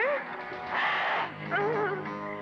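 Audio of a 1990s Hindi film clip: background music with short, wavering vocal cries, one at the start and another near the end.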